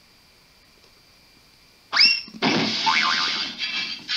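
Cartoon sound effects: a quick rising tone about two seconds in, then a noisy cartoon crash lasting about a second and a half.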